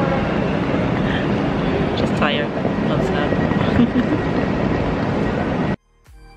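Steady, loud din of a busy train station: crowd chatter over the hall's background noise, cutting off abruptly near the end.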